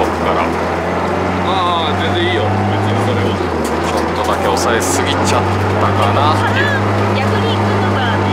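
Honda Integra Type R DC2's 1.8-litre four-cylinder engine running at steady revs, heard inside the stripped rally car's cabin, with the revs dipping briefly about three seconds in.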